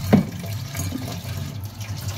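Water running from a kitchen tap as glass jars are washed in the sink, with a single knock just after the start.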